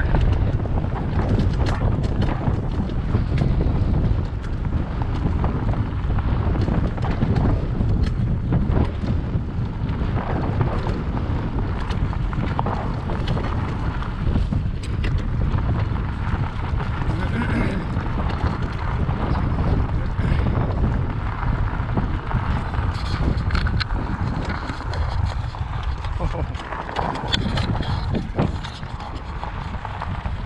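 Wind buffeting the microphone of a bike-mounted camera while riding a rough dirt trail: a steady low rumble with scattered clicks and knocks from the bike jolting over the ground.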